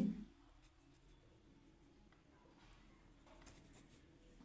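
Pen writing on ruled notebook paper: faint, scattered scratching strokes of handwriting.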